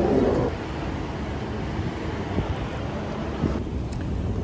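Steady rushing background noise of a large train station hall. A pitched hum in the first half second stops abruptly.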